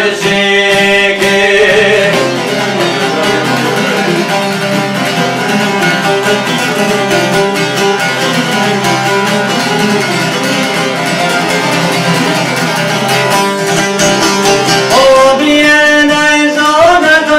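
Albanian folk music on plucked long-necked lutes, çifteli among them: an instrumental passage of quick plucked notes over a steady low drone. A man's singing voice comes back in near the end.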